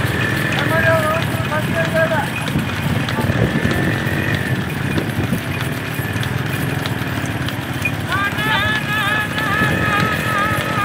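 Hooves of a pair of bullocks clattering on tarmac as they pull a racing cart at a run, over the steady running of motorcycle engines. People call and shout throughout, with a wavering high call near the end.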